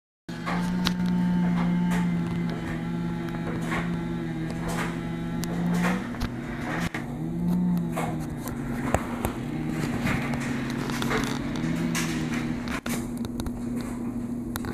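Two-stroke chainsaw running at high revs while cutting into the base of a standing tree. Its pitch dips and recovers several times as the chain bogs down and frees in the cut.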